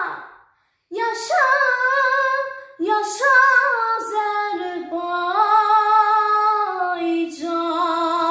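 A young girl singing unaccompanied, in short phrases after a brief pause near the start, then holding long sustained notes through the second half.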